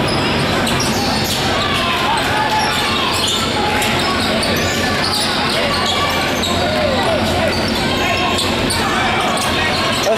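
Basketball bouncing on a hardwood court amid a steady mix of voices from players and spectators, with short sharp knocks throughout, echoing in a large gym hall.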